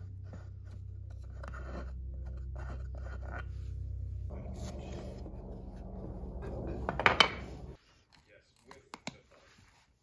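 Old upholstery fabric and staples being pried and pulled off a wooden footstool frame with a hand tool: scattered scrapes and clicks, loudest about seven seconds in. Under them runs a steady low hum that cuts off suddenly near the end.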